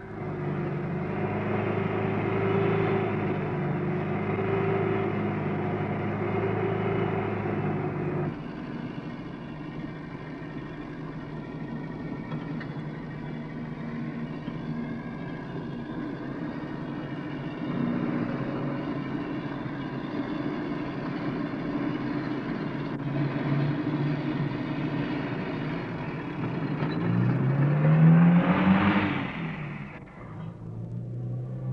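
Ambulance van's engine running as it drives, a steady drone that is loudest for the first eight seconds and quieter in the middle. Near the end the engine revs up in a rising pitch, the loudest moment.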